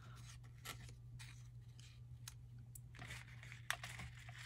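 Faint rustling and light taps of cut paper pieces being handled and laid on a paper layout, with a few soft clicks scattered through, over a steady low hum.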